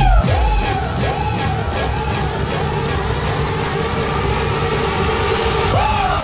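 Electronic dance music in a breakdown without the heavy kick drum: a lead line swoops up and down in pitch about twice a second, then settles into a held note over a sustained backing, with another swoop near the end.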